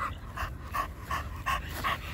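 Pocket American Bully panting steadily with mouth open, about three quick breaths a second.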